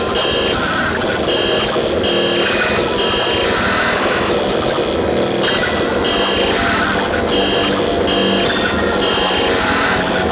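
Darkcore hardcore electronic music: a dense, noisy synth passage with a short pattern repeating under a second apart, the deep bass and kick held back.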